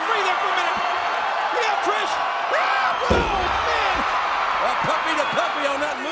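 Arena crowd cheering and shouting, with a heavy thud about three seconds in as a wrestler lands a diving moonsault onto her opponent on the ring canvas.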